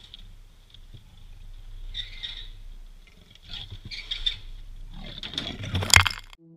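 A leopard bursting out of a steel trap cage on the back of a pickup: scattered rustles and clatters, then a louder rush of scrabbling and knocks near the end as it leaps free. A faint steady high-pitched ring runs underneath.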